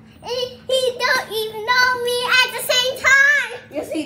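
Young girls singing in high voices, in short sustained phrases.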